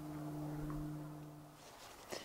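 A faint, steady low hum that fades away about three-quarters of the way through.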